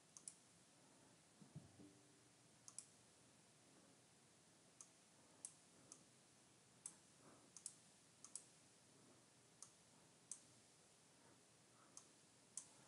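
Faint computer mouse clicks: about a dozen short, sharp clicks at irregular intervals, some in quick pairs, as the mouse selects items and drags windows.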